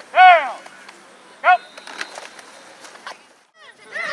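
Two short, loud one-word shouts about a second apart, calls of a football line drill, with light knocks and clicks between them. Near the end the sound cuts out briefly and gives way to several voices talking at once.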